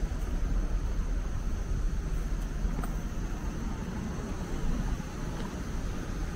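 City street ambience: a steady low rumble of distant traffic.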